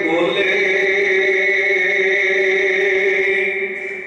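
A man's voice holding one long chanted note on a steady pitch through a microphone and loudspeaker. The note fades out just before the end.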